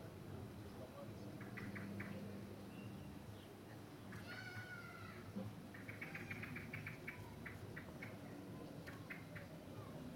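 Faint garden bird calls: a few short chirps, a longer falling call about four seconds in, then a rapid run of short chips about six seconds in, followed by a few more scattered chirps.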